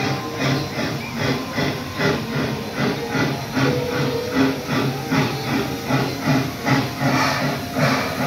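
Steam locomotive working steadily, its exhaust chuffing about four times a second over a hiss of steam.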